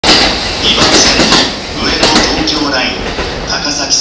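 A public-address voice announcement over station platform noise.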